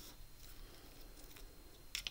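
Faint handling of a small piece of glitter paper and card on a tabletop, with a light click near the end.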